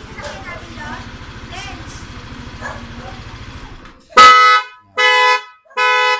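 Yamaha Aerox scooter's engine idling, then cutting out abruptly about four seconds in when the GPS tracker's remote shutdown relay kills it. The scooter's horn then beeps three times in quick succession, about half a second each, as the tracker's shutdown signal.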